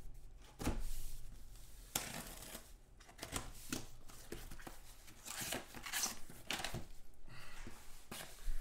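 Cardboard shipping box being opened by hand: packing tape torn along the seam and the flaps pulled back, with rustling and scraping of cardboard and a few knocks as the box is turned on the table.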